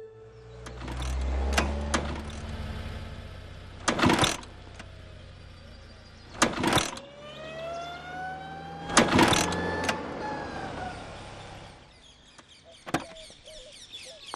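Motor scooter being kick-started over and over without catching: a series of loud clunks a few seconds apart, with the engine briefly sputtering.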